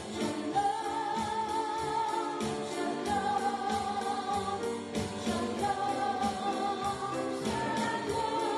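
A woman sings a worship song live into a microphone, backed by piano and a drum kit keeping a steady beat. She holds a long note at the end of each short phrase.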